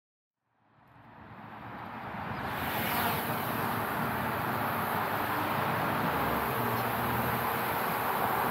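Small quadcopter drone's propellers whirring as it lifts off and hovers. The sound comes in about a second in, grows over the next two seconds, then holds steady.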